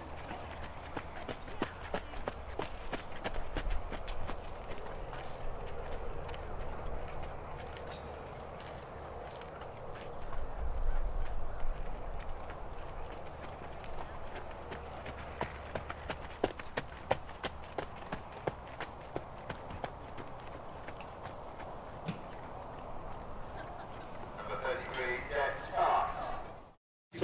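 A horse trotting in hand on a gravel lane: a run of sharp hoofbeats crunching on the gravel, with the handler's running footsteps alongside.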